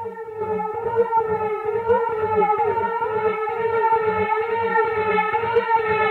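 Techno track playing in a DJ mix: a held, slightly wavering synth tone over a low bass pulse of about four beats a second. The top of the sound brightens about a second in.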